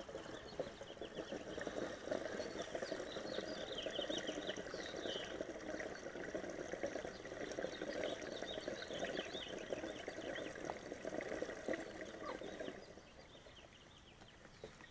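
Gasoline pouring from a portable gas can's spout into the filler neck of a car that has run out of fuel. The pour runs steadily and stops shortly before the end.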